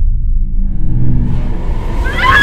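Deep, loud rumble from a horror-trailer sound design, with a low steady hum in it. From about halfway, a hiss swells in above it.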